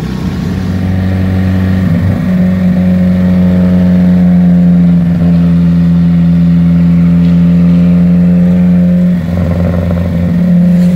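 Datsun Fairlady roadster's R16 four-cylinder engine pulling at a steady, nearly constant pitch under way. It dips briefly about nine seconds in, then carries on.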